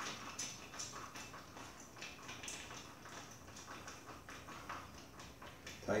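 A Phillips screwdriver tightening a screw through flat, lock and nylon washers into the spring mount of a reflex punching bag. It makes faint, irregular light clicks, about two a second.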